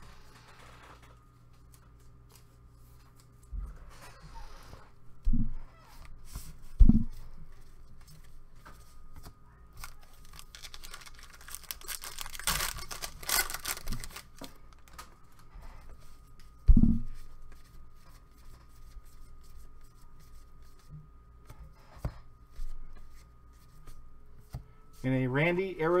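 A trading-card pack's foil wrapper being torn open and crinkled, loudest midway through, with a few dull thumps from the pack and cards being handled.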